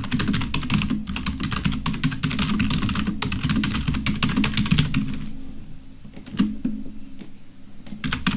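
Fast typing on a computer keyboard: a dense, quick run of keystrokes for about five seconds, then a few scattered keystrokes.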